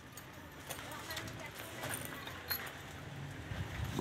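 Faint footsteps with scattered light clicks and taps as a person walks up to a wire dog kennel.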